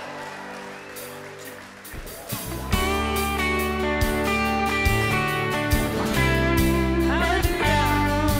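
A live worship band: a soft held keyboard and guitar chord, then about three seconds in the full band comes in louder, with acoustic and electric guitars and a beat. A voice sings a short phrase near the end.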